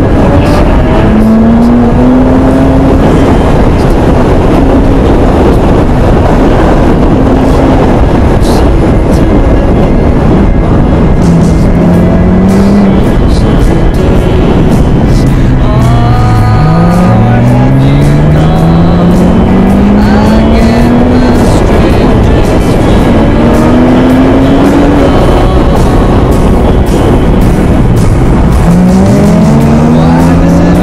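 Porsche flat-six engine pulling hard up through the revs and easing off, repeatedly, with heavy wind and road noise on an exterior-mounted camera. About halfway through the engine note drops steeply low, then climbs again in one long rising pull, and it drops and rises again near the end.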